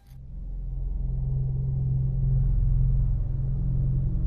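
Deep, steady low rumble with a low hum in it, swelling in over about the first second and then holding: a trailer-style sound-design drone.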